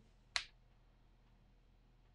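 A single short, sharp click about a third of a second in, otherwise near silence.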